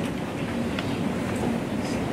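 Steady room noise with faint voices in the background.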